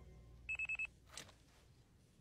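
Handheld police radar gun beeping: a quick trill of about five high electronic beeps lasting a third of a second as it takes a speed reading. A brief faint whoosh follows.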